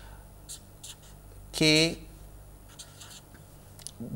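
Felt-tip permanent marker writing on paper: a few short, faint strokes as letters are drawn, over a low steady hum.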